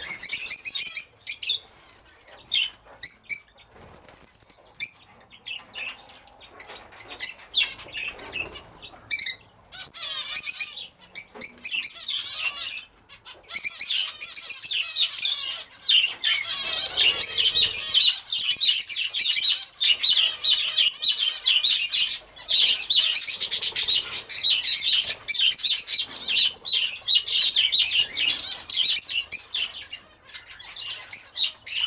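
A mixed flock of budgerigars and zebra finches chattering and chirping, with wing flaps among the calls. The calls come in scattered spells at first and become a near-continuous high chatter from about halfway through.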